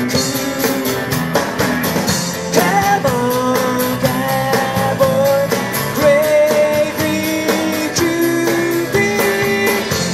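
A live rock and roll band playing. A man sings lead into the microphone over a Telecaster-style electric guitar and a steady beat, holding long sung notes.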